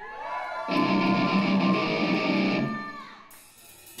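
Electric guitar played through the stage amp between songs: a loud chord held for about two seconds that then rings out and fades.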